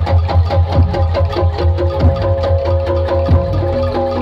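Jaranan gamelan accompaniment: hand drums and struck metal percussion playing a fast, steady rhythm over a held pitched tone.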